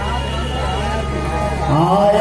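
Sound of a live stage play: held musical tones and a murmur of voices over a low steady hum. A man's voice, speaking or chanting, rises clearly near the end.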